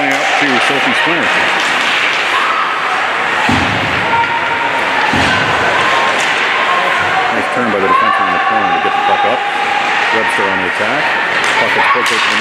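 Ice hockey rink during play: voices calling out over steady arena noise, with two low thuds about three and a half and five seconds in.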